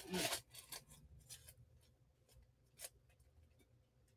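Faint rustling and scraping handling sounds: one short scrape right at the start, then a few fainter brief ones scattered through, over a low hum.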